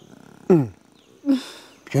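A woman crying: a wail that falls steeply in pitch about half a second in, then a short sob and a breathy, sniffling intake of breath.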